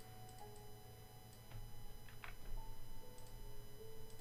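A few quiet, separate computer mouse clicks over faint background music.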